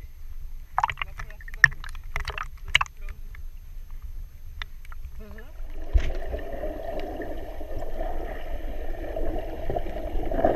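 Small waves splashing and slapping against an action camera held at the water's surface, in a few sharp splashes. About six seconds in the camera goes under, and the sound turns to a steady, muffled underwater rush with gurgling.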